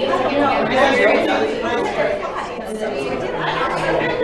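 Indistinct chatter of many people talking at once, with overlapping voices and no single clear speaker.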